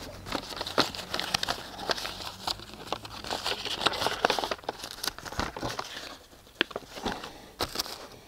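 Handling noise from an e-collar remote handset and its fabric zip case: small clicks and rustling, busy for the first five seconds and then thinning to a few single clicks.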